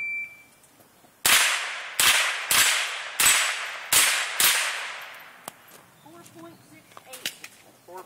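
A shot timer's start beep, then a .22 rimfire rifle firing six quick shots at steel plates in about three seconds, each crack trailing off in echo.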